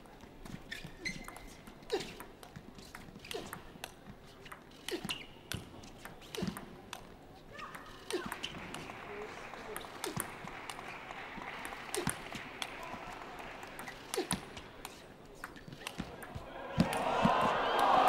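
Table tennis rally: the celluloid ball clicking off the bats and the table in an irregular beat, about one hit a second or faster. Crowd noise rises from about halfway and swells sharply near the end as the point is won.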